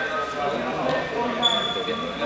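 Many people talking at once in a large, echoing sports hall, with a brief high, steady tone about one and a half seconds in.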